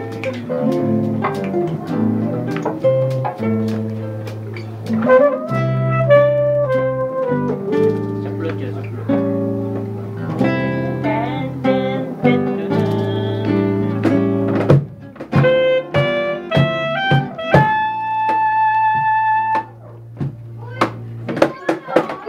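Live acoustic band music: a nylon-string guitar plucking chords over a steady bass line, with a saxophone melody on top that ends in one long held note near the end.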